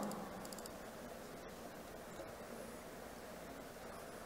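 Quiet room tone of a lecture hall's PA microphone, a low even hiss with a few faint clicks.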